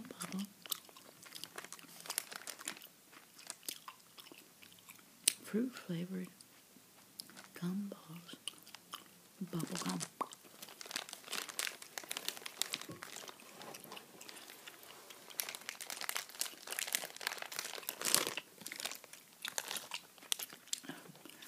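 Bubble gum chewed close to the microphone: a steady run of wet mouth clicks and smacks, busier in the second half, with a few brief soft voiced sounds about six, eight and ten seconds in.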